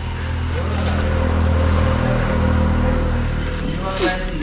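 A motor vehicle engine running off-picture, a steady low hum that grows a little louder over the first second or so and then holds.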